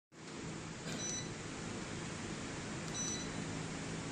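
Two short high electronic beeps, about two seconds apart, from a ceiling fan light's receiver acknowledging button presses on its remote control, over a steady background hiss and hum.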